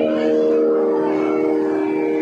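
Steady drone of several held tones from a Carnatic nadaswaram ensemble, sounding on its own without the wavering nadaswaram melody.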